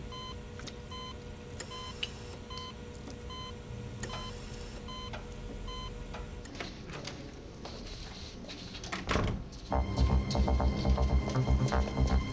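Patient monitor in an operating room giving short, evenly spaced high beeps over a low hum. After about six seconds a rising whoosh swells, and dramatic background music with a pulsing low beat takes over near the end.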